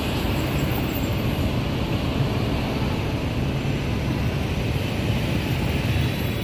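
Steady traffic noise from a busy city intersection: motor scooter, car and bus engines running together with a constant low hum and no single standout event.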